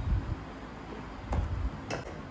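Quiet room noise with two short, light knocks, about halfway through and again near the end, as a drinking glass is set down on a tabletop.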